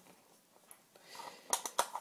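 Quiet for about a second, then a few light clicks near the end as hands handle a metal Sig Sauer 1911 CO2 airsoft pistol.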